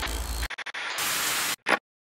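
Glitchy static-noise sound effect for an animated logo: a hiss that stutters on and off in quick cuts, comes back, then snaps off with one last short burst.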